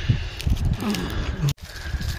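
Rustling and handling of a foil-wrapped chicken drumstick as a dog takes it and noses at it, with the sound dropping out briefly about one and a half seconds in.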